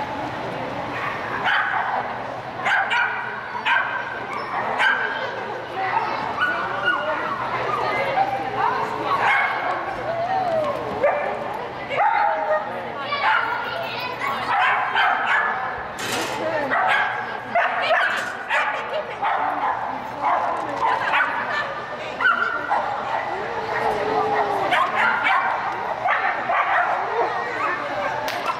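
Shetland sheepdog barking and yipping in short, high calls over and over as it runs.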